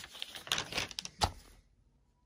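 Paper notebook pages being handled and turned: a run of rustles and sharp papery taps, the loudest about a second and a quarter in, stopping about one and a half seconds in.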